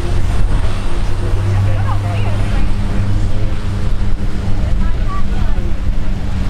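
De Havilland Canada DHC-6-300 Twin Otter's twin turboprop engines and propellers running with a steady low drone as the aircraft taxis along the runway.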